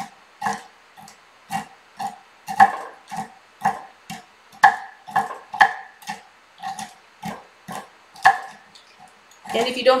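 Chef's knife chopping roasted shelled pistachios on a wooden cutting board: steady chops about two a second, each a short knock of the blade through the nuts onto the wood. The chopping stops about a second before the end, when a voice begins.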